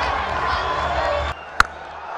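Stadium crowd noise that cuts off abruptly just past the middle, followed by a single sharp crack of a cricket bat striking the ball.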